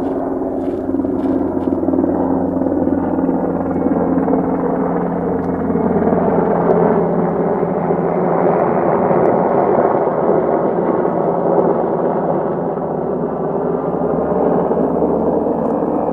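A military-looking helicopter flying low overhead: the steady beat and hum of its rotors and engine, a little louder about halfway through as it passes over, then easing slightly near the end.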